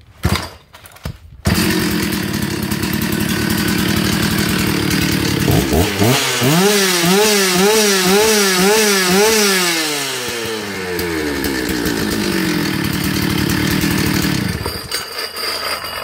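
1993 Stihl 066 Magnum 92 cc two-stroke chainsaw firing up about a second and a half in, idling, then revved up and down about five times in quick succession before settling back to idle. It cuts off shortly before the end.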